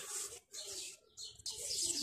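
Faint bird calls in the background, in short high-pitched chirps.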